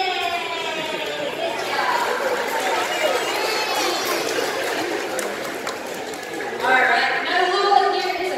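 Speech echoing in a large hall, with audience chatter in the middle stretch and a clear voice again near the end.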